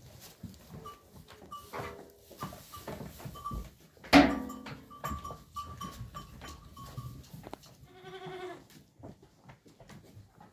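Goats bleating in a pen: one loud bleat about four seconds in and a second one near the end, over small knocks and rustling from the crowded herd.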